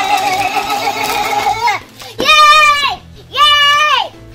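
A child's voice holding a long, wavering note while plastic packaging crinkles. About two seconds in come two loud, high, held calls about a second apart.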